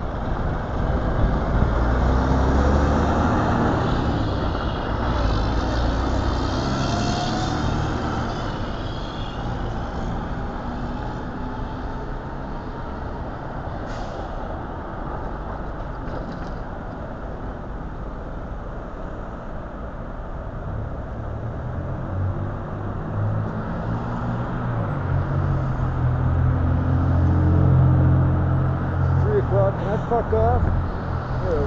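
City street traffic: vehicle engines running as cars and trucks pass through the intersection. A heavier engine hum swells in the first few seconds and again toward the end.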